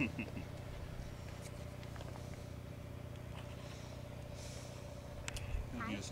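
Steady low engine hum, unchanging throughout, with a brief bit of voice at the very start.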